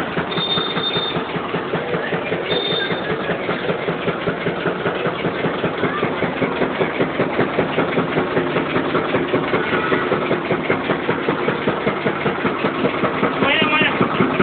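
Engine-driven sugarcane juice crusher running with a steady, fast rhythmic beat as cane is fed through its rollers.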